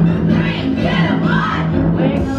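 A song with a singing voice playing through an Art & Sound LED wireless jukebox speaker, with strong, steady bass under the vocal line.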